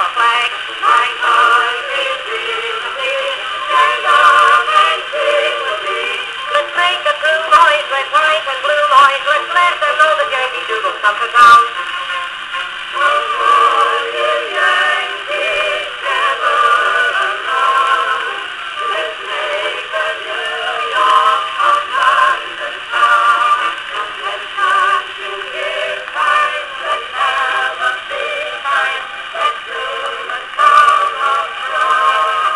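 A 1921 Victrola acoustic phonograph playing a 1903 Standard disc record of a ragtime band song. The music is thin, with no bass, under steady surface crackle from the old record, and there is one sharp click about a third of the way in.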